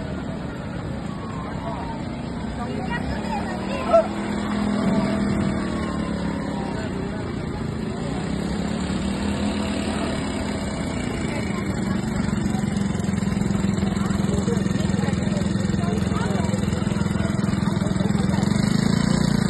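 Small engines of children's mini quad bikes running steadily on a dirt track, with voices around them. The sound grows louder toward the end as one quad rides close. A short loud cry stands out about four seconds in.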